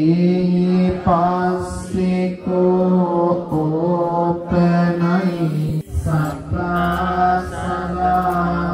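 Buddhist devotional chanting: one voice intoning verses in long, held notes, phrase after phrase.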